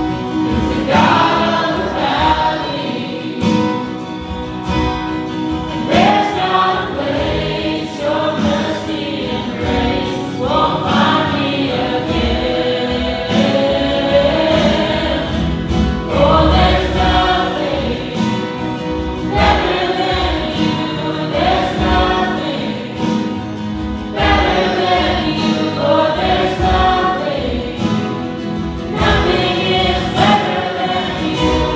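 Live worship band playing a worship song: several voices, men's, women's and a child's, singing together over strummed acoustic and electric guitars.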